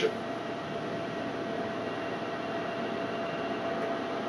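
ARTAS robotic hair-transplant system's arm moving into its center position, a steady, even mechanical hum with a faint steady whine.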